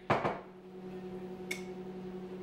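A short burst of noise right at the start, then a steady electrical hum. A single light clink of a glass bottle comes about a second and a half in, as the bottle is handled.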